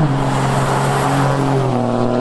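2018 Ram Cummins turbodiesel pickup driving past at speed. Its engine note drops sharply in pitch as it goes by, over tyre and road noise.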